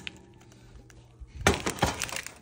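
Metal baking pan being set down on an electric coil stove burner, a few quick clanks about one and a half seconds in.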